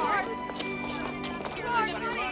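Film soundtrack: orchestral score with held notes, and short vocal sounds over it near the start and again near the end.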